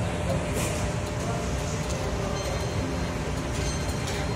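Busy fast-food restaurant ambience: a steady din of indistinct voices over a low background rumble.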